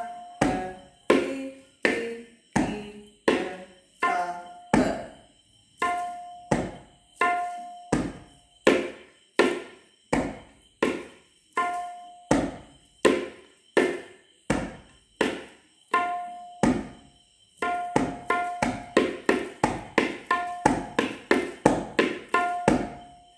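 Tabla pair (dayan and bayan) played solo with single hand strokes, many of them ringing, working through the lesson's 'ta ke ti ri ki te' bol pattern. The strokes come about two a second, then about eighteen seconds in double to roughly four a second.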